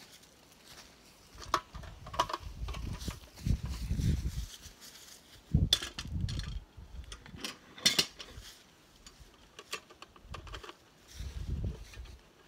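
Metal clanks and clinks from a hive-weighing stand and hanging scale being set against a wooden beehive and the hive tipped back. The sharpest knocks come about 6 and 8 seconds in. Low dull thuds and rustling from handling run between them.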